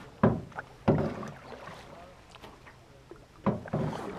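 Aluminum canoe being paddled: sudden knocks of the paddle against the metal hull, ringing briefly. There are two knocks near the start and two more near the end.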